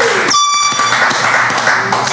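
Brief air-horn sound effect: one held tone about half a second long, starting and stopping abruptly near the start. Laughter and chatter carry on around it.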